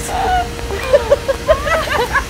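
Vacuum cleaner running with a steady hum, sucking the air out of a large plastic bag so that it clings tight around a seated person.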